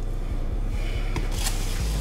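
Steady low room hum with a few short, soft rustles of hands handling a sauced chicken wing in a cardboard takeout box.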